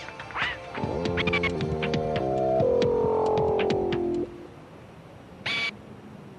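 Orchestral-style background score: a few held chords that step in pitch, dying away about four seconds in. A short high tonal sound follows near the end.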